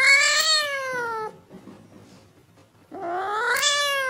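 A cat meowing: two long, drawn-out meows, each rising and then falling in pitch, the first ending about a second in and the second starting about three seconds in.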